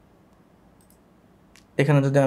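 A couple of faint computer mouse clicks over quiet room tone, then a man's voice starts near the end.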